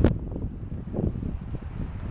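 Wind buffeting the microphone in uneven gusts of low rumble, with one sharp click right at the start.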